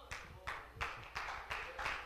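Rhythmic hand clapping in a steady beat, about three claps a second.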